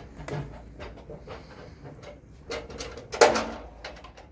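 ToughBuilt folding metal sawhorse being unfolded by hand: scattered clicks and metal clatter as a leg is released from the folded frame, with one sharp knock about three seconds in.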